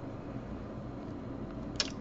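Quiet room tone: a steady low hum, with one brief faint click just before the end.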